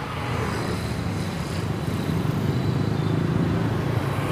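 Steady road traffic noise with a low engine rumble, picked up by an outdoor microphone.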